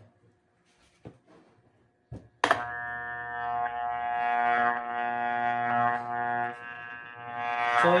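Homemade growler armature tester switching on with a click about two seconds in, then a steady electrical hum rich in overtones as a starter-motor armature sits on its core and is turned by hand. The hum's level wavers a little. Before it there are a few faint clicks of the armature being handled.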